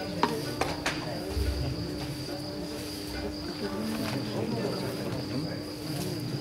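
Faint murmur of people's voices over a steady low hum and a steady high whine, with a few short clicks and knocks in the first second.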